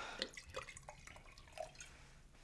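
Tequila being poured from a small bottle into a glass: a faint run of short gurgles and drips.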